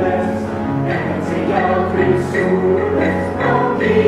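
Mixed chamber choir of young voices singing in harmony, sustained chords moving from note to note.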